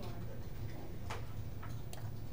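A few sharp clicks of a computer mouse as layers are clicked and dragged, the strongest about a second in, over a steady low hum.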